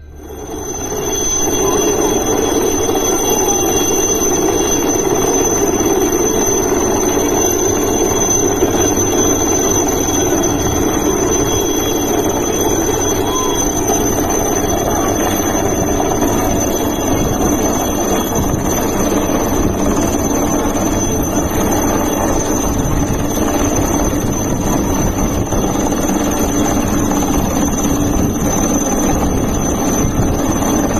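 Helicopter hovering low overhead: a loud, constant rush of rotor and engine noise with a steady high-pitched turbine whine on top.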